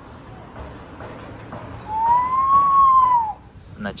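African grey parrot giving one long whistle about two seconds in, its pitch rising and then falling back.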